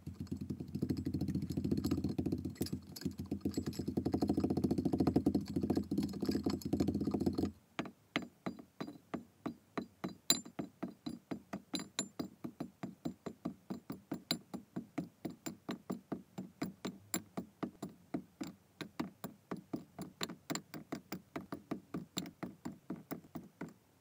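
A wooden muddler presses and grinds kinetic sand into a glass, making a dense, crunchy squish that stops abruptly about seven seconds in. Kinetic sand cubes and balls then drop into the glass one after another, landing in soft thuds about three or four times a second.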